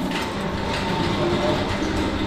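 Wheelchair wheels rolling along a tiled hospital corridor floor: a steady rumble and rattle.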